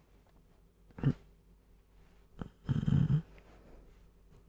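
A man snoring in his sleep, close to the microphone: a short snort about a second in, then a longer snore near the end.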